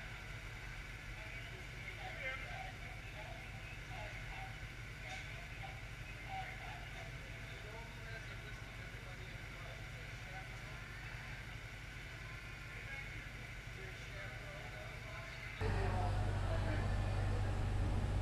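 Steady low rumble of an idling diesel locomotive, with faint distant voices over it. Near the end the hum suddenly grows louder and deeper, heard from inside the locomotive's cab.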